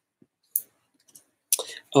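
Near silence broken by a few faint, short clicks, then a breath and a voice starting near the end.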